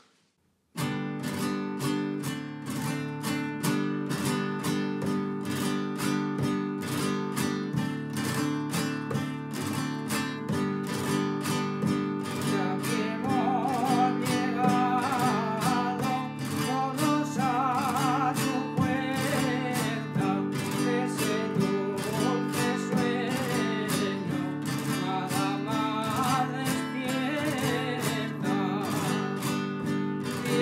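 Spanish acoustic guitar strummed in a steady chordal rhythm, played 'a golpes' (struck strokes) in the 'por la valenciana' position as accompaniment to a traditional mayo song. About twelve seconds in, an elderly man's voice joins, singing the melody with vibrato over the guitar.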